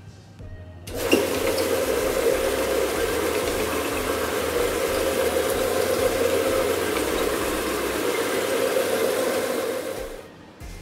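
Tile-and-grout cleaning wand spraying and extracting water from a tile floor: a loud, steady rush of water and suction with a hum underneath. It starts abruptly about a second in and stops near the end.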